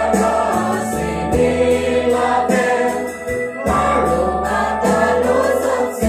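A church choir singing a gospel hymn together, backed by an electronic keyboard holding steady low notes.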